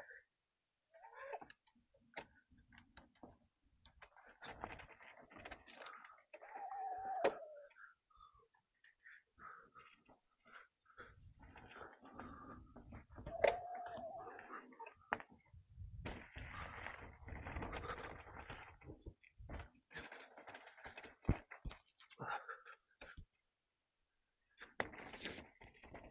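Electric mountain bike ridden along a dirt singletrack: uneven bursts of rattling and clicking from the bike and its tyres over the trail, coming and going.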